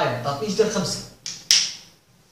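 A man's voice, then two sharp clicks from a whiteboard marker a little over a second in, the second one louder with a short ring.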